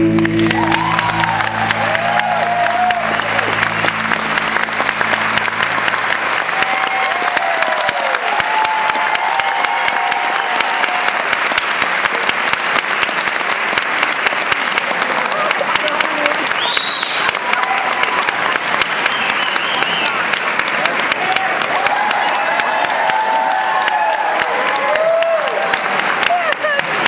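Audience applauding, with cheers and calls rising over the steady clapping, as the waltz music's last held chord fades out over the first few seconds.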